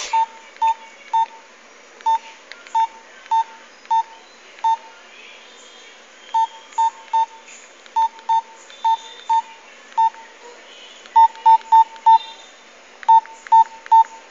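Nokia mobile phone keypad beeping with each key press while a text message is typed: about two dozen short beeps, all at one pitch, at an uneven pace with some quick runs of three or four.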